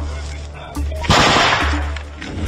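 Loud rifle shot about a second in, its crack fading over about half a second, after the fading tail of an earlier shot.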